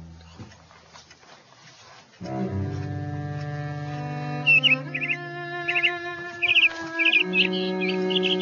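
Cello music starts about two seconds in, with slow, held low notes. From about halfway on, a small bird chirps over it in short, irregular bursts of tweets.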